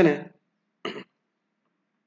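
A man clears his throat once, briefly, about a second in, just after the end of a spoken phrase.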